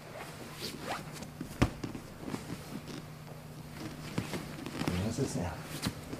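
Jiu-jitsu gis rustling and scraping against each other and against the mat as two grapplers shift their grips and weight. There is a single dull thump about a second and a half in.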